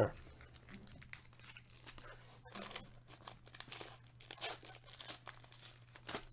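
Plastic wrapper of a Panini Donruss basketball trading-card pack being torn open and crinkled by hand: a run of irregular crackles, busiest in the middle, over a faint steady low hum.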